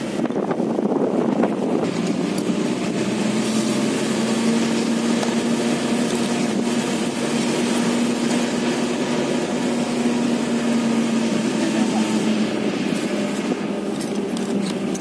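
Pickup truck driving along, heard from its open cargo bed: a steady engine hum with road and wind noise.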